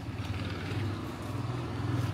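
Motor scooter engine running steadily with a low hum, growing slightly louder toward the end as it approaches.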